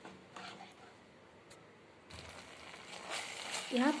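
Spatula stirring thick gravy, just thickened with cornflour slurry, in a nonstick kadhai: soft scraping, faint at first and louder from about two seconds in.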